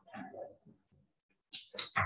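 Speech only: a speaker's voice trails off at the end of a sentence, then a brief near-silent pause, with a couple of short hissing sounds just before speech resumes.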